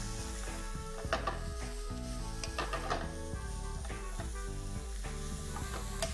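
Shredded cabbage, carrot and bean sprouts sizzling as they are stir-fried in hot oil on high flame, with a wooden spatula scraping and knocking against the pan several times.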